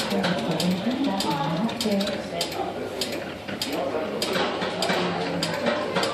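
Working model of a 7A Rotary telephone switching system running, its motor-driven rotary selectors and relays clicking and ratcheting in many sharp, irregular clicks as a call is set up, with a person's voice alongside.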